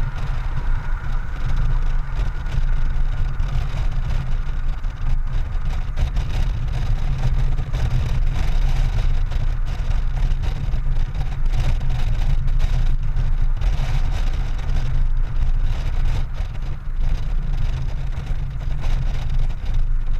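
Honda Gold Wing GL1800 motorcycle riding at steady town speed: its engine and road noise under a loud, steady low rumble of wind on the microphone.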